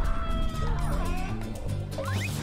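Animated cartoon soundtrack: background music with a low bass line, overlaid with sliding, whistle-like sound effects, one falling through the first second and another rising near the end.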